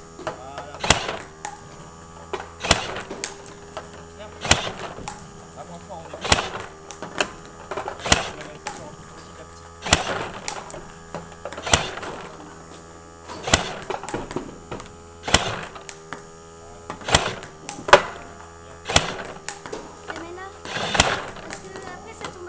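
Table-tennis rally against a ball-feeding robot: sharp plastic knocks of the ball leaving the machine, bouncing on the table and striking the bat, coming in pairs about every two seconds, over a steady low hum.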